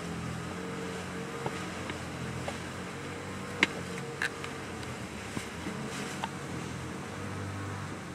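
Steady low background hum with a few short, sharp clicks scattered through it.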